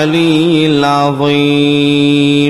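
A voice chanting Arabic ruqyah recitation, holding a long, drawn-out note on a nearly steady pitch with slight wavers.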